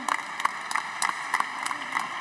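Scattered applause from a few deputies in the chamber: sharp, irregular hand claps, several a second.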